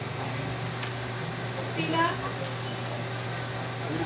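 Steady low machine hum over a constant background hiss, with a brief faint voice about halfway through.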